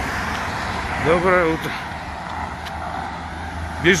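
Steady road traffic noise beside a busy road. A short word is spoken about a second in, and talk begins near the end.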